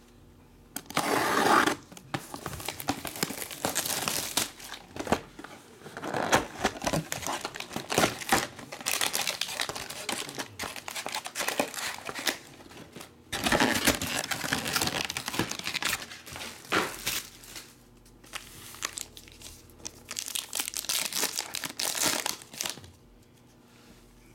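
Plastic shrink wrap crinkling and tearing as a sealed trading-card hobby box is unwrapped, then cardboard and wrapped card packs rustling as the packs are pulled out and opened, in irregular bursts with short pauses.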